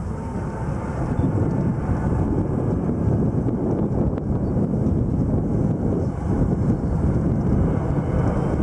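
Boeing 747 jet engines rumbling steadily as the airliner makes a low flyby, growing slightly louder.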